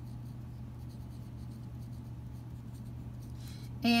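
Pencil writing a word on paper: faint scratching strokes over a steady low hum.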